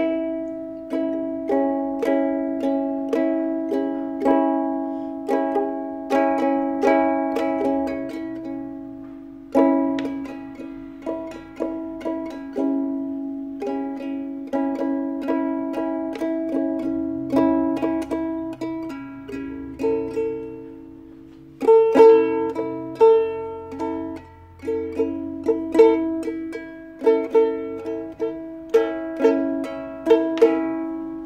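Ukulele plucked note by note by a beginner, picking out a slow, halting tune while the open strings ring underneath. The playing thins out briefly about nine seconds in and again about twenty-one seconds in, then resumes.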